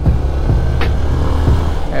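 Yamaha SZ motorcycle's single-cylinder engine running steadily while riding, a low drone mixed with road and wind noise.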